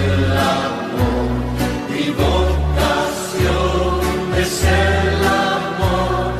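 Catholic worship song: a choir singing over instrumental accompaniment, with a bass line that moves to a new note about once a second.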